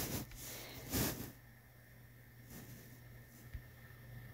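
Quiet room tone with a steady low hum. Two faint breathy noises come in the first second or so, and there is one tiny click near the end.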